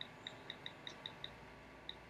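Faint on-screen keyboard clicks from a smartphone as someone types: quick, irregular taps, about seven in the first second and a quarter, a short pause, then one more near the end.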